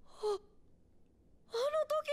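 A short, breathy gasp-like vocal sound, then a pause, then a high-pitched child's voice from the anime's dialogue starting about one and a half seconds in.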